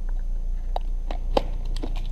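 A few light clicks and taps of small plastic parts and tools being handled in a tyre puncture repair kit case, over a steady low hum.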